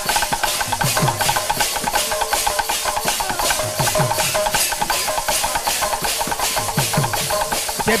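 Kirtan instrumental interlude: large brass hand cymbals clashing in a fast, even rhythm with a ringing tone, over a barrel drum whose low strokes bend downward in pitch about once a second.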